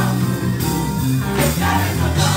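Gospel choir singing with a live church band, a bass line prominent under the voices.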